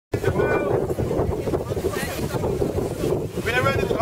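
Wind buffeting the microphone, a steady rough rumble, with scattered crowd voices and a voice calling out near the end.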